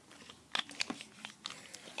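Colour pencils being handled, giving several light, irregular clicks as they knock against each other and against the hand.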